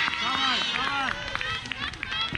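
Several high-pitched voices shouting and calling out over one another at a youth soccer game, one of them calling a player's name.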